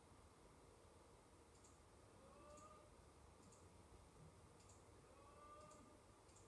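Near silence with faint computer mouse clicks, about one a second.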